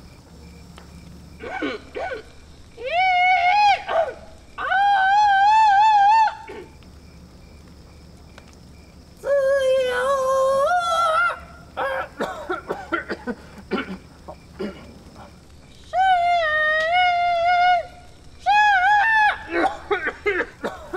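A man singing a few lines of Chinese opera in a high, wavering voice with heavy vibrato, in five drawn-out phrases separated by pauses.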